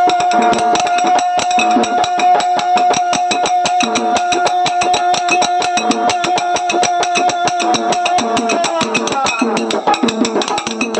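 Folk ensemble music without singing: small hand cymbals struck in a quick, steady rhythm over drum beats, with a single long held note that fades out near the end.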